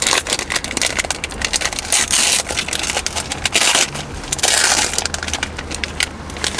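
Plastic wrapper of an ice cream sandwich bar being torn open and peeled off by hand, with dense, irregular crinkling and crackling.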